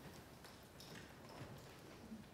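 Near silence, with a few faint scattered knocks and shuffles as a congregation gets to its feet.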